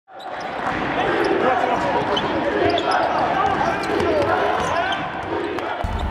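Basketball game sound in an arena: a ball bouncing on the court under many voices talking and calling out at once, with scattered short clicks and brief high squeaks. The sound fades in at the start and changes just before the end.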